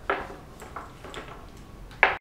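Light clicks and taps of a plastic plug-in power-supply adapter and its cable being handled: a sharp click at the start, a few softer ticks through the middle, and a louder click at the very end.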